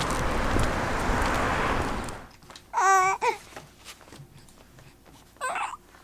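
Steady rushing outdoor noise for about two seconds. Then a young infant cooing: one high, wavering coo about three seconds in and a shorter one near the end.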